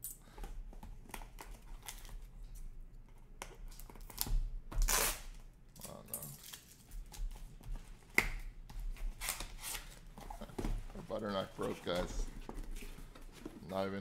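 Taped cardboard case being torn open by hand: scraping and tearing of tape and cardboard, plastic packing crinkling, and small knocks as boxes are shifted. There is one longer, louder noise about five seconds in.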